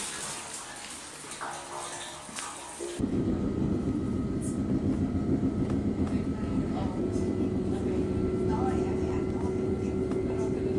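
Steady low rumble of a moving train heard from inside the carriage, starting abruptly about three seconds in after a stretch of hissy outdoor ambience; a steady hum joins the rumble about seven seconds in.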